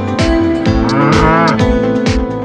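A cow mooing once, a single call of about a second starting about half a second in, over background music with a steady beat.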